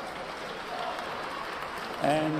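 Boxing crowd applauding steadily at the end of the bout.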